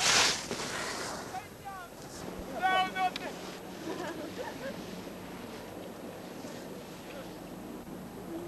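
Wind on a camcorder microphone, with a short loud hiss right at the start and a couple of brief, high-pitched shouted calls from voices a couple of seconds in.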